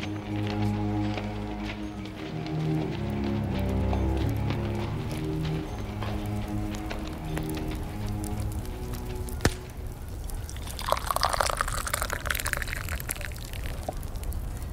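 A low instrumental music bridge plays and fades out over the first eight seconds or so, marking a scene change. After a single sharp click, a radio-drama sound effect of coffee being poured into a cup starts about eleven seconds in.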